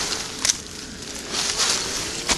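Rustling and crackling in dry leaf litter and undergrowth, with one sharp click about half a second in.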